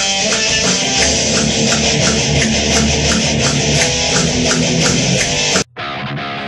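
Heavy rock music with electric guitar and drums over a steady beat, played loud in a recording studio. It cuts off suddenly near the end.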